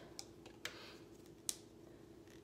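Three faint, sharp clicks from hands handling small objects, over a low steady hum.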